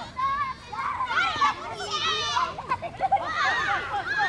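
A group of children shouting and calling out over one another, with high-pitched cries, while they run about in a team ball game.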